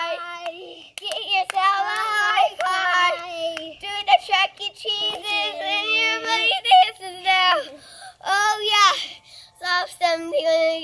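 Young children singing a dance song together in high voices, in short phrases with brief pauses between them.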